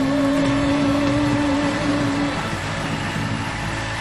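The song's final held note rings on and stops a bit over halfway through, leaving a steady, slowly fading noisy background as the music ends.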